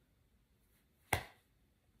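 A single sharp finger snap about a second in, amid near silence.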